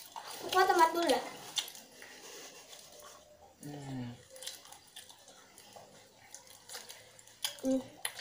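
Quiet chewing and wet mouth sounds of people eating crispy fried chicken with their hands, with faint clicks and ticks. Two brief voices break in, one about half a second in and a lower one around four seconds in.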